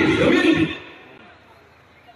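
A man's voice speaking loudly into a microphone over a PA, breaking off about two-thirds of a second in, followed by a pause of faint background noise.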